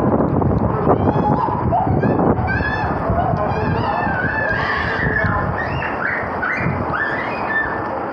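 Heavy rain pouring down on a street, with a quick run of short, honking, goose-like calls about a second in and more gliding high calls in the second half.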